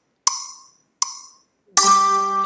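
Playback from a rhythm-training web exercise: the last two wood-block-like clicks of a four-beat count-in, evenly spaced just under a second apart. Near the end a sustained pitched note begins on the next beat, the first note of the rhythm being played back.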